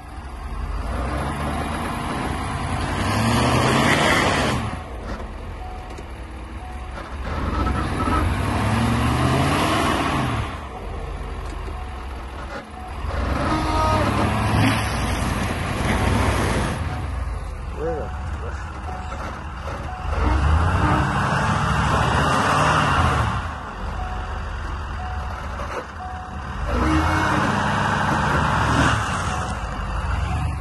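Ford F-350 pickup's engine revving up and dropping back five times, each rev lasting about three seconds, with the tyres spinning in mud as the stuck truck tries to drive out.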